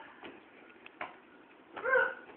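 A sharp knock about a second in, then a short, high, rising yelp near the end: a man crying out in pain after kicking a bowling ball.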